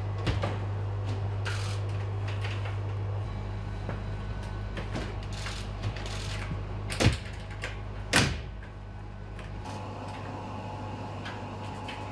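Steady low electrical hum of a metro train car, with a few sharp knocks and clunks, the loudest two about seven and eight seconds in; the hum drops in level near the end.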